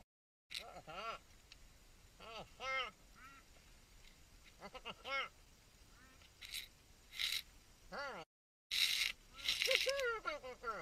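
A diver's voice underwater, speaking through a rebreather mouthpiece: short, high-pitched calls, made squeaky by breathing a helium mix. Bursts of hiss come between the calls near the end.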